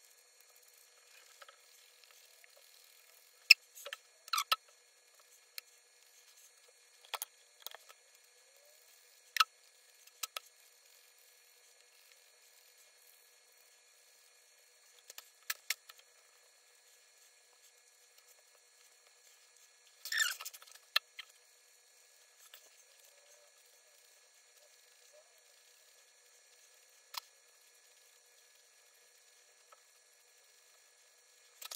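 Steel scissors snipping through beard hair in scattered single cuts and quick pairs, with pauses of several seconds between them and a short flurry of snips and handling about two-thirds of the way through.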